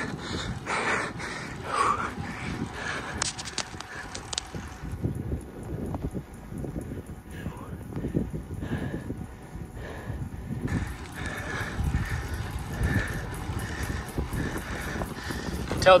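Wind rushing over the microphone of a camera on a moving road bicycle, steady with uneven gusts, and a voice heard faintly in the first couple of seconds.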